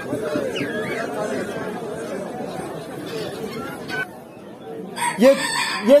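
Roosters crowing and chickens calling amid the chatter of a crowd. A louder voice comes in near the end.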